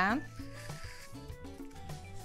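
Quiet background music, with sustained low notes and short melodic notes.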